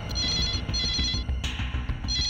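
Electronic telephone ringing: two half-second warbling trills close together, then a pause before the next pair starts. Low background music plays under it.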